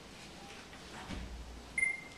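Quiet room tone with a low rumble, then near the end a short, steady electronic beep.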